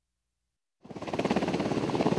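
Silence for nearly a second, then a UH-60 Black Hawk helicopter's running sound cuts in suddenly: the rotor's fast, even beat over a steady rush of engine noise.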